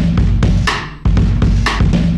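A drum loop playing: a beat with a heavy low end and a bright snare hit about once a second, with quick hi-hat ticks between.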